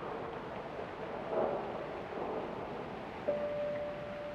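Steady rushing air from the installation's large electric fans, with a faint rustle. About three seconds in, a single held musical note begins.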